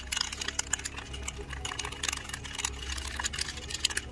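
Metal spoon stirring a thick paste in a glass bowl: quick, irregular light clicks and scrapes of the spoon against the glass.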